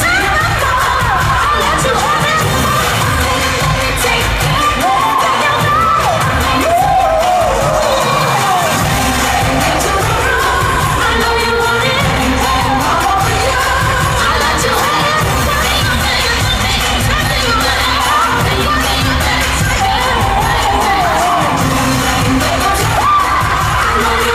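Live pop concert heard from within the audience: amplified music with strong bass and singers' vocals over a loud crowd cheering.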